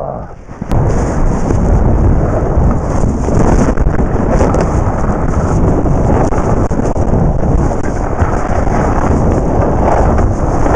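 Loud, steady wind buffeting on the microphone of a skier's point-of-view camera while skiing down a groomed slope, with the rush of skis on snow; it starts abruptly under a second in.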